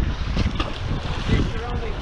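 Strong wind buffeting the microphone in a gusty low rumble, with a brief faint voice near the end.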